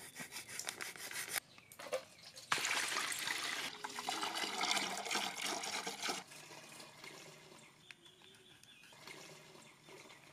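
A knife slitting open a plastic milk packet in a quick run of short rasping strokes, then milk pouring in a thick stream from the packet into a steel pot. The pour is loudest for a few seconds in the middle and goes on more softly toward the end.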